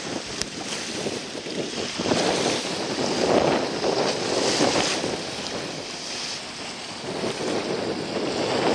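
Wind buffeting the microphone over choppy open water, with waves washing and splashing, growing louder in the middle.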